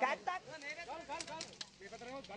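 People talking, with voices strongest at the start, and a few short clicks around the middle.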